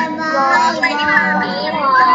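Several young children's voices chanting together, not quite in unison, reciting a Thai consonant in the sing-song rote style ('bo bai mai'), heard through a video-call connection.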